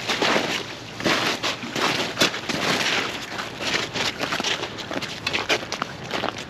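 Footsteps crunching through slush and meltwater on lake ice: an irregular run of crackly crunches.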